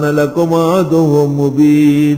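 A man chanting Quranic Arabic recitation in a melodic line, drawing the words out and holding one long steady note through the second half.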